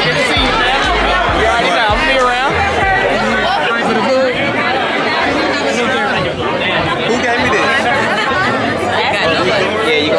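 Party crowd chatter, many voices talking over each other, with loud music playing; the music's low bass beat drops out about four seconds in.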